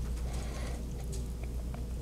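Faint rustling and a few small clicks from Bible pages being handled at a lectern, over a steady low electrical hum.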